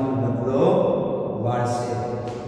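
A man's voice talking or reciting in Gujarati in a drawn-out, sing-song way, with long held syllables near the end.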